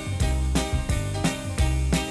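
Instrumental introduction of a pop song: the band and orchestra play a steady beat, about two and a half strokes a second, with no voice yet.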